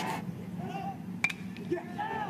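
Quiet ballpark crowd ambience with faint voices, and a single sharp crack about a second in: a bat meeting a hard-hit pitch.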